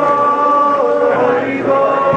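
Voices chanting a devotional kirtan, holding long sung notes in a slow melodic line.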